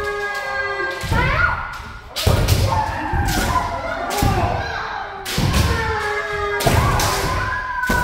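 Kendo practice: heavy stamping thuds of bare feet on a wooden floor and shinai strikes every second or two, overlapping with long drawn-out kiai shouts from several practitioners at once.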